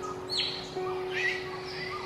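Common hill myna calling: a loud, sharp note falling in pitch about half a second in, followed by softer warbling notes about a second in and again near the end.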